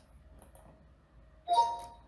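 Microsoft OneNote's dictation start tone, a short two-note chime about one and a half seconds in. It signals that voice recording has started.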